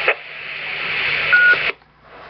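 Radio Shack Pro-2016 scanner receiving a 2-metre amateur repeater just after a station unkeys: the repeater's carrier plays as a hiss that grows louder, with one short steady courtesy beep a little over a second in. Then the repeater drops and the scanner's squelch cuts the sound off suddenly.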